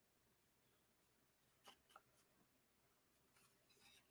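Near silence: faint room tone, with a few soft clicks and rustles about halfway through and again near the end.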